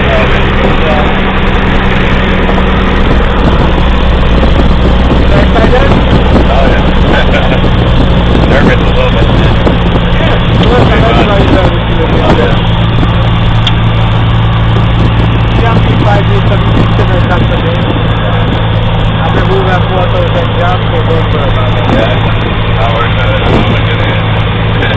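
Engine of a small high-wing propeller plane running loud and steady, heard from inside the cabin with the door open; its note shifts about ten seconds in.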